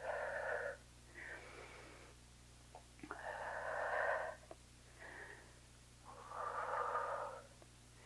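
A woman breathing hard through the mouth during exercise: three long, loud breaths with shorter, fainter breaths between them. A few faint ticks can also be heard.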